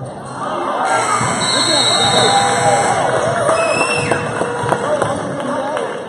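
Crowd of spectators and players in a gymnasium talking and calling out over one another, many voices at once, swelling louder about a second in.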